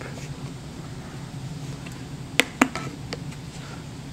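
Two sharp plastic clicks, a fraction of a second apart, about two and a half seconds in: the flip-top cap of a chocolate syrup squeeze bottle being snapped open. Faint handling ticks over a low steady room hum.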